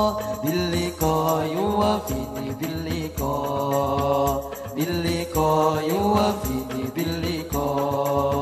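A man singing an Arabic devotional song (sholawat) into a microphone, with long held notes that glide and bend in pitch, over a steady drum rhythm.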